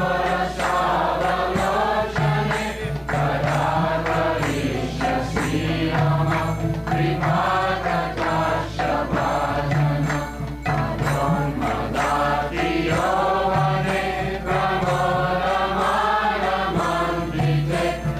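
Devotional kirtan: voices chanting a mantra in a continuous melody over steady instrumental accompaniment.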